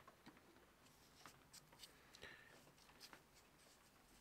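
Faint, scattered small clicks and light scrapes of steel parts handled with gloved hands, as a round back plate is set onto a lathe scroll chuck's body over its oiled scroll gear, with one brief faint metallic ring.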